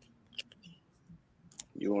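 A few faint, scattered clicks during a pause, then a man's voice starting to speak near the end.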